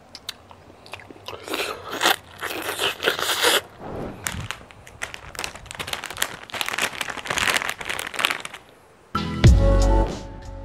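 A person biting into and chewing a fresh mango close to the microphone: a run of short, sharp bites and chews in clusters, over background music that gets louder near the end.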